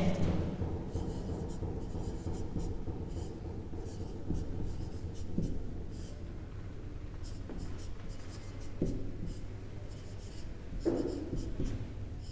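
Marker pen writing on a whiteboard: a run of short, faint scratchy strokes over a steady low room hum.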